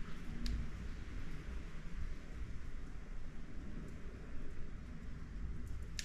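Butane lighter flame burning steadily under a pin gripped in pliers, a faint even hiss as the pin is heated for a hot-pin test. There is one short click about half a second in.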